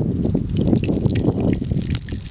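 Cooking oil poured from a plastic squeeze bottle into a frying pan, trickling onto the metal, over a steady low rumble.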